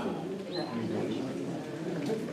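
Low, indistinct voices murmuring in a meeting room, with no clear words.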